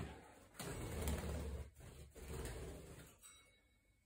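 Faint handling noises from a wooden chair being held and worked on, with a couple of soft knocks about half a second and just under two seconds in.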